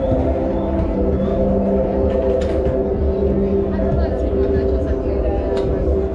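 Droning music with several steady held tones over a constant deep bass, under the chatter of a crowd of people.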